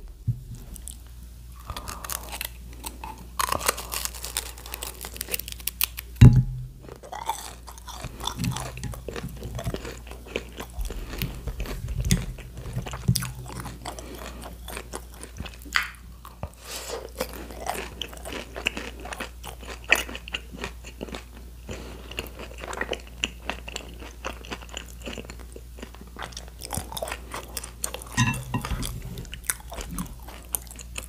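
Close-up eating sounds: crunchy bites and wet chewing of tteokbokki rice cakes in sauce and fried snacks. A sharp low thump comes about six seconds in.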